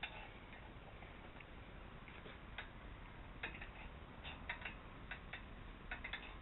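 Faint, irregular light clicks and ticks as a bolt is wound into the metal head of a Skywatcher EQ8 telescope mount. The clicks come mostly in the second half, some in quick clusters of two or three.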